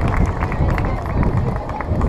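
Scattered applause from a small audience: irregular, separate hand claps over a low background rumble.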